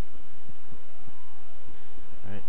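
Steady background hiss with faint tones gliding up and down through it.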